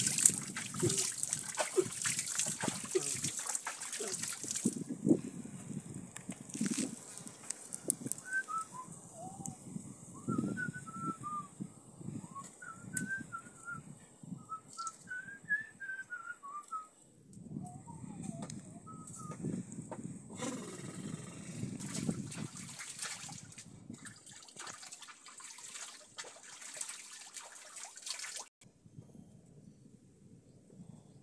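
Water splashing and trickling in a shallow rocky stream pool, with knocks and scrapes of someone moving over the stones. From about a third of the way in, a string of short high chirps that rise and fall runs for several seconds.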